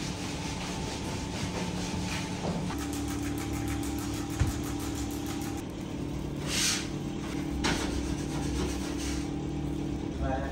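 Steady mechanical hum of a running motor, with a sharp thump about four and a half seconds in and a brief hiss a little after six seconds.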